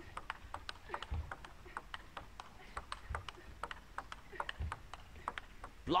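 Table tennis rally: the ball clicks crisply back and forth between rackets and table, about three to four ticks a second, heard through the match broadcast.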